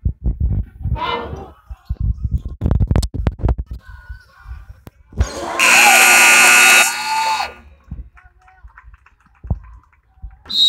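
Basketball bouncing and shoes hitting the hardwood court on a fast break, then a gym scoreboard horn blares for about a second and a half, stopping play.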